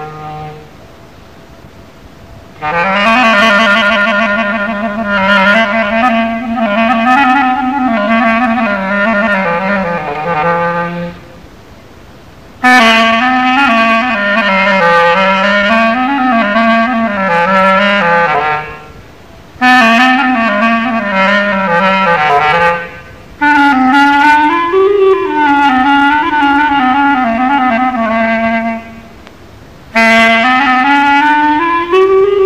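Solo instrumental taqsim, an unaccompanied improvisation in Moroccan Andalusian style: one sustained, ornamented melodic line that winds up and down in pitch. It comes in four phrases of a few seconds each, the first starting after a short pause and each of the others after a brief break.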